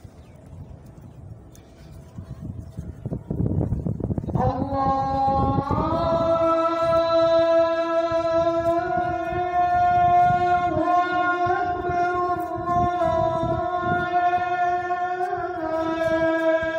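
A single voice chanting the call to prayer (adhan) in long, drawn-out held notes that step slightly up and down in pitch, starting about four seconds in after faint low rumble.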